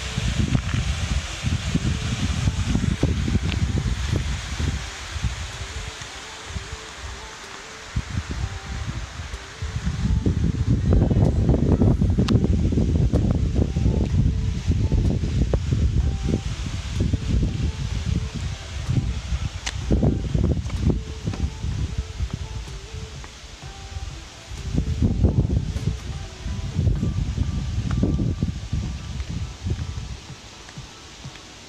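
Wind buffeting an outdoor phone microphone in uneven gusts of low rumble, with faint background music throughout.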